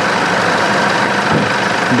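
A vehicle engine idling steadily close by, a constant hum with no change in pitch.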